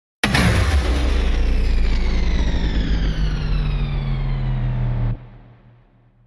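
News-channel intro sting: a loud sound effect with a deep steady drone and many tones sliding slowly downward in pitch. It cuts off about five seconds in and fades away over the next second.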